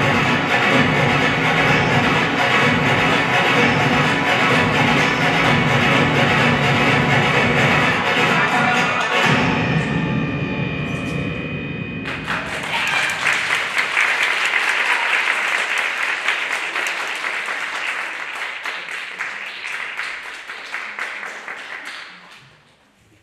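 Routine music playing with a steady low beat, thinning to a few held tones about nine seconds in and ending about twelve seconds in. Audience applause and clapping then break out and fade away toward the end.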